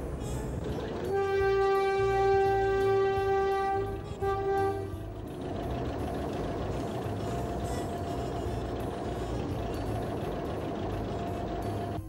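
Small factory train's horn sounding one long blast and then a short one. After that the train runs with a steady low rumble.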